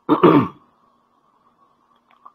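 A man briefly clears his throat, one short sound of about half a second, followed by a faint steady electronic hum.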